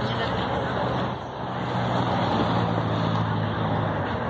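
A motor vehicle's engine running steadily close by, a low even hum that grows stronger about a second and a half in, over crowd chatter.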